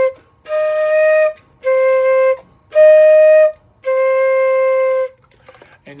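Flute playing separate held notes that slowly alternate C and E-flat (C, E-flat, C, E-flat, C), each about a second long with short gaps and the last one longer. It is a practice drill for the awkward fingering switch between C, played without the thumb, and E-flat.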